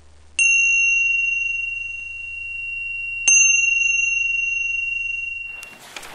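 A small high-pitched bell struck twice, about three seconds apart, each strike ringing on and slowly fading; the second ring cuts off suddenly near the end.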